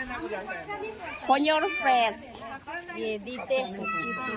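People talking, some voices high-pitched; no other sound stands out from the speech.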